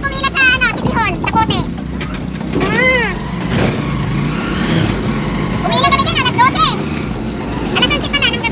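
Steady low running noise of a road vehicle, heard from inside as it moves along. Bursts of people's voices come over it at the start, about three seconds in, and again around six seconds in.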